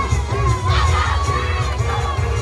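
Church congregation shouting and cheering over fast gospel praise-break music with a pounding low beat, one high shout rising above the crowd about halfway through.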